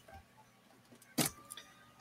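Near silence, room tone, broken by one short sharp sound about a second in.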